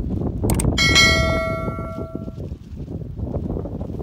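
A click followed by a bright notification-bell chime sound effect from a subscribe-button animation. The chime rings for about a second and a half and fades away.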